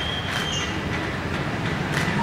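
Moving train: a steady rumble of the carriage on the rails, with thin, high wheel squeals near the start.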